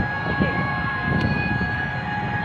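A steady low rumble of a running engine, with a constant high whine held over it.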